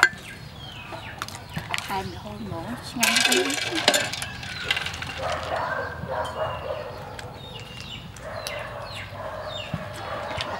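Chickens clucking in the yard, with repeated short falling peeps, and a louder noisy stretch about three seconds in.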